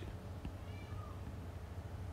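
A faint, brief animal call in the background, a little under a second in, over a low steady hum.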